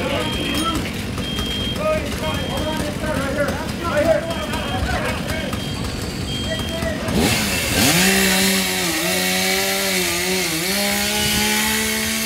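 A two-stroke chainsaw revs up about seven seconds in and then runs at high speed, its pitch dipping briefly as it bites, while a roof crew cuts a ventilation opening over the fire. Before it, indistinct shouted voices.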